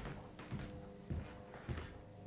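Soft footsteps on an indoor floor, three low thuds about half a second apart, over faint background music.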